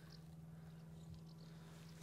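Near silence: a faint steady low hum with no clear event.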